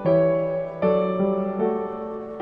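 Slow, gentle instrumental Christmas music on piano: a chord struck at the start and another just under a second in, then softer notes, each ringing and fading away.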